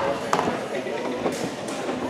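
Indistinct chatter of several voices in a gymnasium. A sharp knock comes about a third of a second in, and two short sharp sounds come a little past the middle.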